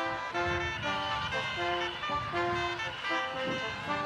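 An ensemble with brass and other wind instruments playing a dance tune, a melody of short held notes.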